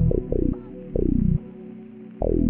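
Trap beat in E minor at 142 BPM: deep 808 bass notes gliding down in pitch, a few short hits then a longer held one, over a faint sustained melody with a dull, muffled top. The bass drops out for about the last half second.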